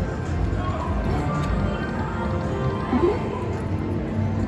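Aristocrat Buffalo Gold Max Power slot machine playing its game music and sound effects as the reels spin and stop, over a steady casino background din. A short rising tone sounds about three seconds in.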